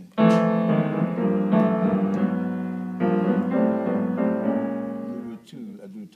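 Acoustic piano playing a run of jazz chords, each struck firmly and left to ring, with a new chord about every half second to second; the playing thins out near the end.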